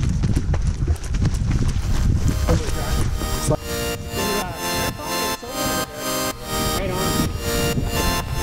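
Wind rumbling on the microphone and footfalls of runners on a dirt trail. About three seconds in, electronic music with a steady beat fades in and takes over.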